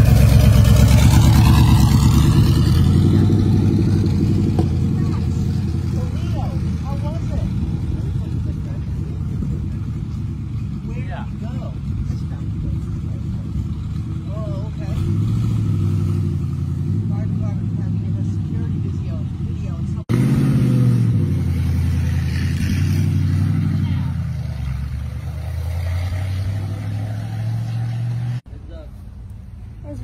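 Studebaker straight-eight engine of a 1932 Studebaker Indy racer replica running as the car drives past and away, loud at first and fading, its note rising and falling as it is driven. The sound cuts abruptly about twenty seconds in and again near the end.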